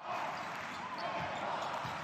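Steady arena crowd noise from a basketball game in play, an even hubbub of many voices.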